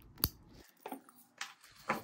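Small metal clasp on a handbag strap being worked open by hand: one sharp click about a quarter second in, then three fainter clicks and rattles.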